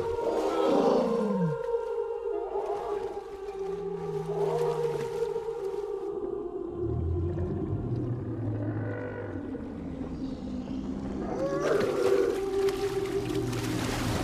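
Film soundtrack: a sustained orchestral score with low, drawn-out creature calls, one sliding down in pitch about a second in. From about three quarters of the way through, a noisier crash of water and ice builds up.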